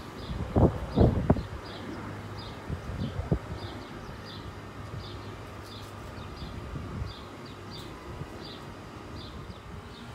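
A short high chirp repeating steadily about every two-thirds of a second, with a few loud low thumps about a second in.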